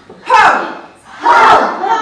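A group of children shouting together in a theatre voice exercise: one short loud shout, then a second, longer one starting about a second in.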